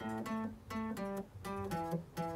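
Solid-body electric guitar playing a blues shuffle riff in the key of A, single picked notes at about four a second that step between a few low pitches, dropping to a lower note near the end.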